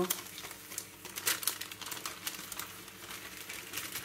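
Baking-paper strips crinkling as they are handled over a small pan of hot oil, with the oil crackling irregularly around frying choux-pastry rings. The crackles come thickest about a second in.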